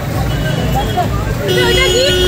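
Busy street ambience: a steady low traffic rumble with background voices. About one and a half seconds in, a steady pitched tone with overtones starts, like a vehicle horn held on.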